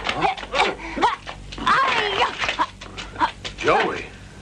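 A man's short pained cries and grunts, one after another in quick succession.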